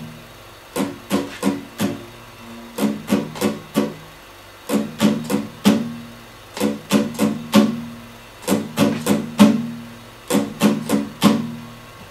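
Acoustic guitar with a capo on the third fret, strummed slowly in a down-up pattern for a song in three-time. The strokes come in six groups of four, about a third of a second apart, with a short gap between groups.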